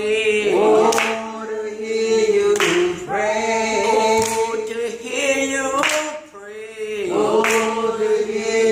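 An elderly woman singing a slow gospel song unaccompanied, in long held notes that bend and waver, with short breaks between phrases.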